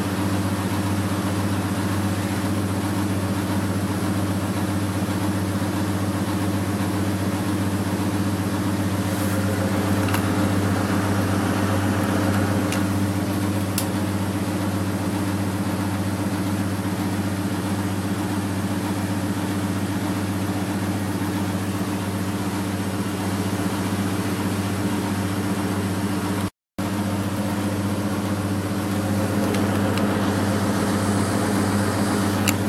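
Front-loading washing machine spinning its drum at high, steady speed, a constant motor hum with no change in pitch, typical of the final spin at the end of the wash.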